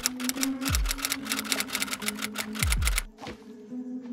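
A rapid run of clicks, about nine a second, a typing sound effect laid over the text writing itself onto the screen; it stops about three seconds in. Underneath runs background music with a deep bass note that slides down in pitch several times.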